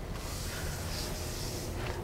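Steady cabin noise of a 2019 BMW X1 xDrive28i on the move: a low, even road and engine noise with a soft hiss, and no distinct events.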